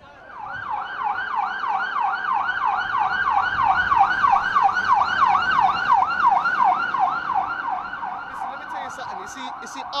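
Police van siren in a rapid yelp, rising and falling about three to four times a second. It grows louder as the vans approach and eases off as they pass.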